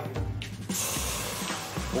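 Water poured into a hot pot of stir-fried anchovies, hissing and sizzling as it hits the pan, starting a little under a second in. Background music plays underneath.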